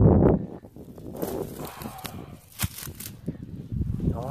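Dry grass stalks rustling and crackling with footsteps as they are brushed and trodden through, with a sharp click about two and a half seconds in. A brief loud low rumble opens the sound.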